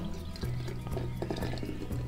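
Beer pouring from a bottle into the neck of a barbecue-sauce bottle, a faint liquid pour under background music.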